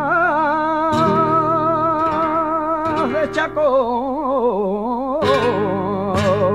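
Male flamenco singer holding a long, ornamented line with wide vibrato, falling in pitch in the second half and rising again, accompanied by flamenco guitar strummed about three times.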